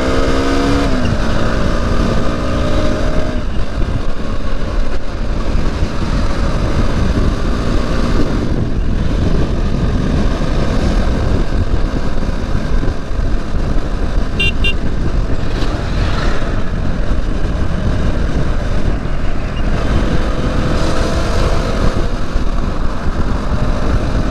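KTM Duke motorcycle's single-cylinder engine running at road speed under heavy wind rumble on the camera microphone. The engine note stands out in the first few seconds and again near the end. A short horn beep sounds about halfway through.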